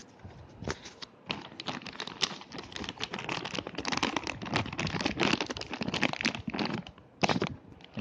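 Plastic snack bag of chocolate nuggets crinkling and crackling as it is pulled and torn open by hand, a dense irregular crackle that builds through the middle, with one sharper, louder crackle near the end.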